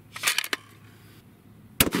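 A few quick clicks, then near the end a single loud shot from a bolt-action 7mm PRC rifle with a muzzle brake, its report rolling away in a long echo. The round is a hot handload that the shooter warns is near unsafe pressure.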